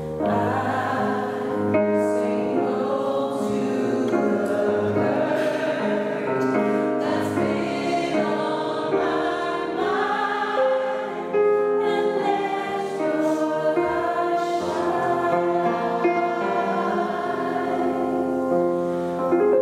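Mixed choir singing a slow gospel-style song with piano accompaniment, the voices coming in right at the start after a piano passage.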